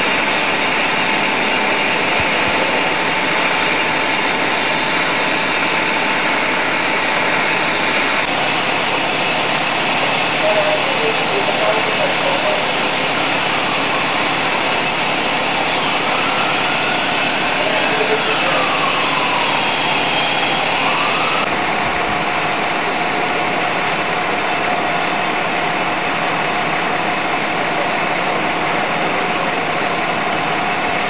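Fire apparatus engines running steadily, with a faint siren rising and falling in the middle.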